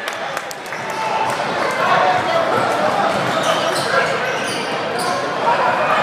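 Live basketball in a gym hall: a steady din of spectator and player voices, with a ball bouncing on the hardwood court.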